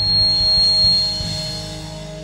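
A live rock band's final chord rings out and fades, with guitars sustaining. A thin, steady high tone sits over it and stops about a second in.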